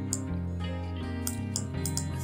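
Background music with long held notes, with a few brief clicks over it, one just after the start.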